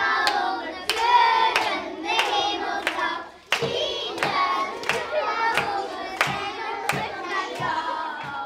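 Young children singing a pop song together into a microphone, with hand claps keeping a steady beat of about one and a half claps a second.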